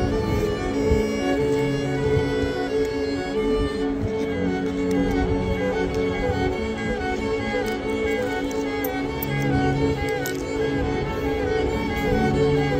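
A violin and a cello playing together: the cello holds long low bowed notes, changing every second or two, under the violin's melody.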